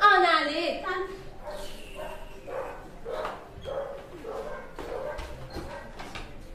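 A woman crying out in distress, loudest in the first second, then a string of shorter sobbing and whimpering cries.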